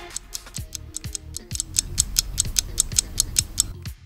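Countdown timer sound effect ticking quickly and evenly, about five ticks a second, over a background music bed. The ticking stops just before the end.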